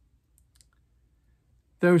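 Near silence with a couple of faint, tiny clicks about half a second in, then a man's voice begins speaking near the end.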